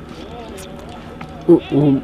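Speech only: an elderly woman talking, with a pause of about a second and a half before she speaks again near the end.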